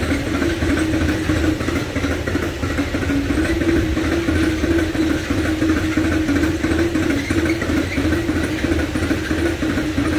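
Long freight train of hopper wagons rolling past on the rails: a steady rumble with a wavering hum over it.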